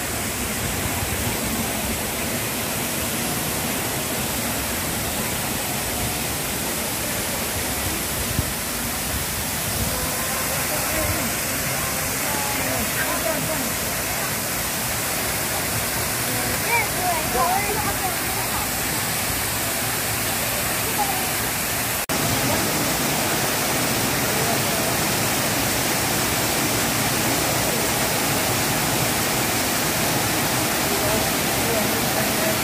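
Steady rushing of a tall waterfall pouring into a rocky cascade, with faint voices in the background for a few seconds in the middle. The rush gets slightly louder about two thirds of the way in.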